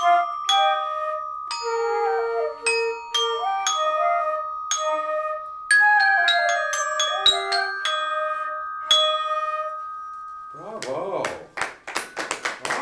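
A student trio plays a traditional Irish tune on two flutes and a glockenspiel: struck, ringing bell notes carry the melody over long held flute notes. The tune ends with a final held note about ten and a half seconds in, and clapping starts right after.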